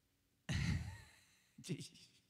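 A man sighs loudly into a close vocal microphone about half a second in, the breath hitting the mic, then gives a short chuckle near the end.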